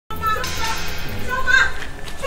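High-pitched women's voices calling out in agitation, the loudest cry about one and a half seconds in, with no clear words.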